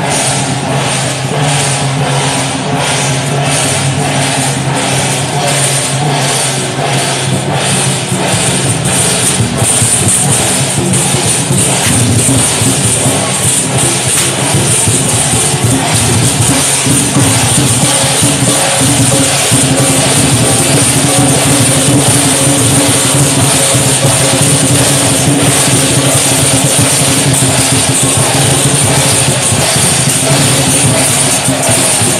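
Loud Chinese lion-dance percussion: drums with clashing cymbals and gongs, keeping a steady beat of about two strokes a second at first, then thickening after about nine seconds into a dense, continuous din of cymbals.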